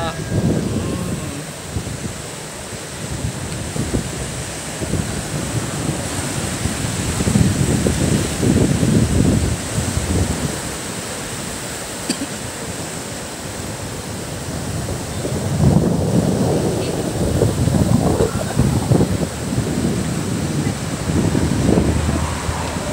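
Choppy sea waves washing over a rocky shore and sandy shallows, with wind buffeting the microphone. The rush swells louder twice, in the middle and again near the end.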